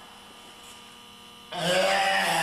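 Steady low electrical hum, then about one and a half seconds in a man's sudden loud effort shout, "yeah", falling in pitch.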